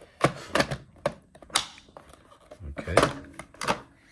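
Hard plastic pieces of a Hot Wheels Monster Trucks Arena Smashers playset clicking and knocking together as they are fitted into place: about six sharp, separate clicks over a few seconds.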